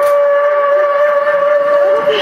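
Music: a flute-like wind instrument holding one long, steady note.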